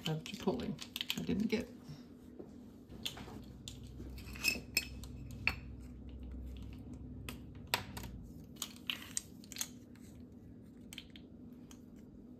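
Scattered light clicks and taps of measuring spoons and spice jars being handled over a ceramic bowl, over a faint steady hum.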